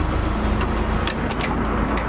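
City bus engine idling at a stop, a steady low rumble with a faint thin high whine over it.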